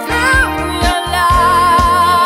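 Dance-band pop music with a steady beat of bass and kick about two per second; a lead melody slides around in the first second, then a long held note with a slight waver sets in about a second and a half in.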